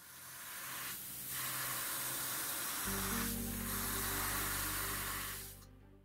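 Airbrush spraying paint in a steady hiss, broken by two short pauses, about a second in and again midway, and stopping shortly before the end.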